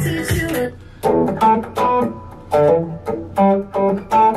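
Godin TC electric guitar, played through an MXR Fat Sugar pedal, picking a short single-note riff of separate notes with brief gaps: a funky E minor pentatonic line around the seventh fret, being worked out by ear.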